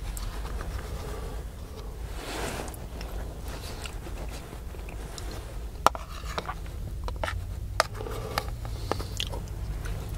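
Close-miked eating of cauliflower cheese soup: a slurp from the spoon, soft chewing and mouth sounds, and a few sharp clicks of the metal spoon against the soup container, the loudest about six seconds in. A steady low rumble runs underneath.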